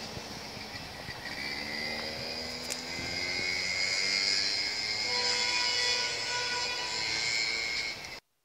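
Aircraft flying overhead, a steady engine noise that grows gradually louder, with slowly rising tones.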